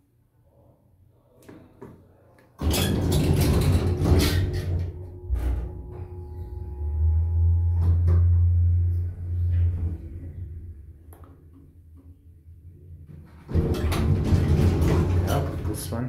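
Atlas Omega II traction elevator (1992) setting off after a sudden loud clatter about two and a half seconds in. Its DC drive starts with a long, low buzz that fades as the car runs. A second loud clatter comes near the end as the car reaches the landing.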